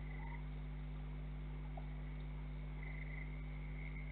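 Steady low hum, with faint short animal calls held at one high pitch at the start and again near the end, and a brief chirp shortly after the first call.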